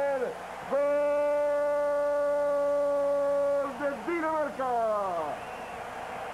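A male Spanish-language TV football commentator's drawn-out shout celebrating a goal, held on one steady pitch for about three seconds, then breaking into several falling cries.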